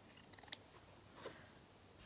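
Small embroidery scissors snipping through a strip of fabric: a few quiet snips, the sharpest about half a second in, and a fainter one a little after the middle.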